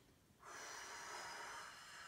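A woman's long, faint breath out during an arm-swinging exercise, starting about half a second in and lasting nearly two seconds.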